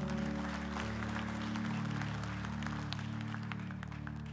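A congregation clapping over steady held chords from the worship band's keyboard; the clapping dies down near the end.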